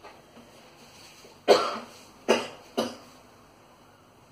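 A person coughing three times: once about a second and a half in, then twice more close together, each cough dying away quickly.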